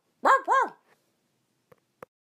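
A dog barking twice in quick succession, two short high-pitched barks. A faint tick follows near the end.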